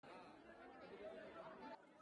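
Faint crowd chatter: many people talking over one another. It drops slightly near the end.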